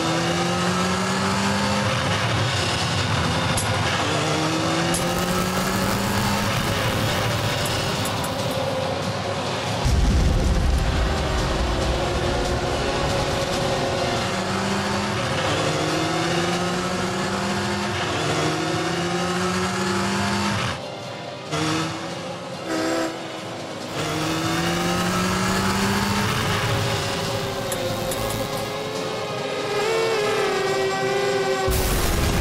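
Motorcycle engine accelerating hard and shifting up again and again, each pull a rising pitch lasting a second or two before it drops back. A heavy low rumble comes in about ten seconds in. The engine sound cuts away briefly a little past twenty seconds.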